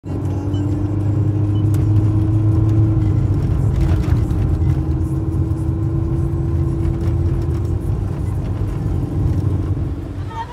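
Car engine and road noise heard from inside the cabin while driving: a steady low rumble with a hum whose pitch dips briefly about three and a half seconds in.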